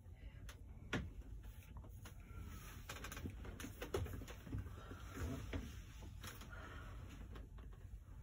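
Faint rustling of a fabric blanket being pulled off and wrapped around a person, with a few soft clicks and knocks, the clearest about a second in.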